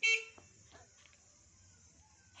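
A short, loud pitched sound right at the start, dying away within about a third of a second, followed by a few faint clicks.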